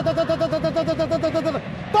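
A male football commentator's voice rattling off one short syllable over and over at a steady pitch, about nine times a second, for about a second and a half: an excited, drawn-out stammer as the striker runs at the goalkeeper.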